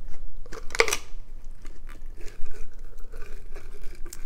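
Hands handling small gift items and their packaging: scattered rustles and clicks, with one sharper burst of rustling just under a second in.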